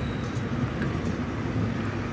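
Steady street traffic noise: cars running along a multi-lane city road, a continuous even rumble with no distinct events.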